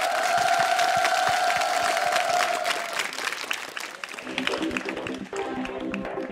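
Studio audience applauding, a dense patter of clapping, with one long steady note held over the first three seconds. Music starts a little after four seconds in, under the clapping.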